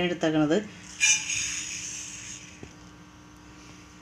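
Granulated sugar poured from a plastic measuring cup into a dark pan: a sudden hiss of grains landing about a second in that fades away over the next two seconds.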